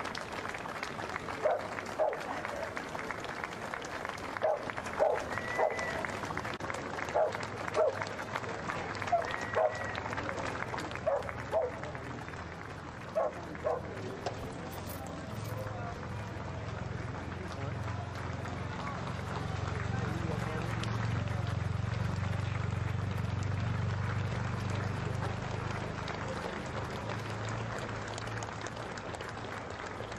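Crowd lining a street applauding politely as a slow funeral procession of cars passes. In the first half, short loud calls ring out from the crowd, and in the second half the low rumble of the hearse and escort cars passing close swells and then fades.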